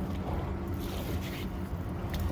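Low, steady rumble of wind on the microphone, with a faint steady hum under it.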